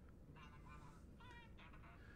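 A smartphone's alert tone sounding faintly through the host's microphone, three short runs of a warbling pitched chime: an unmuted phone announcing a notification.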